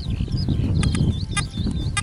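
Wind buffeting the microphone as a loud, uneven low rumble, with a bird's high warbling song and a few short chirps above it.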